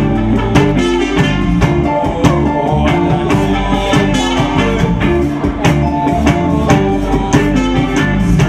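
A reggae band playing live, loud: electric guitars, bass and drum kit with a steady, even beat.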